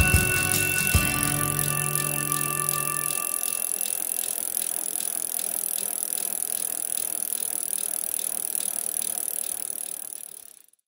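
Closing music with held chord tones that ends about three seconds in. It gives way to a bicycle freewheel ticking steadily as the wheel coasts, slowly growing quieter.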